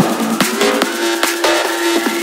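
Vinahouse remix in a break: the bass and kick drop out while a held synth note and percussion hits about twice a second carry on.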